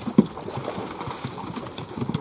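Wet slaps and knocks of a heap of catla fish being handled and sorted by hand into plastic crates, a busy run of short knocks with one louder knock just after the start.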